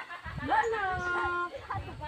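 A dog giving one long whine that rises at the start and is then held for about a second.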